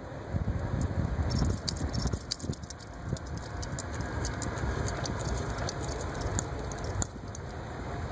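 A puppy's metal leash clip and collar hardware jingling and clicking over a rumble of handling noise, as it chews and paws at its leash.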